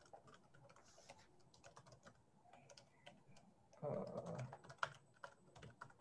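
Computer keyboard typing: a faint, irregular run of quick keystroke clicks as a web address is typed into a browser.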